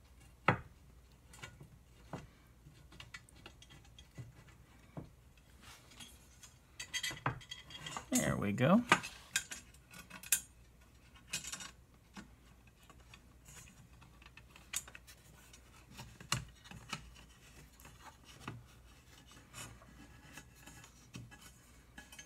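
Scattered small metal clicks, taps and scrapes of aluminium extrusion rails, screws and nuts being handled and slid into position, with a busier spell of clatter about seven to nine seconds in.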